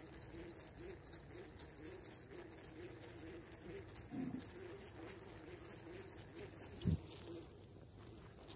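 A dove cooing repeatedly and faintly over a steady, faint high-pitched drone, with a soft low thump about four seconds in and a louder one near the end.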